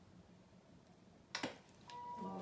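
Near silence: quiet room tone.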